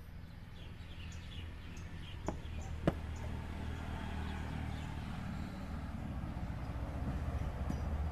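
Outdoor ambience with a steady low rumble and birds chirping. Two sharp knocks about two and three seconds in are the loudest sounds.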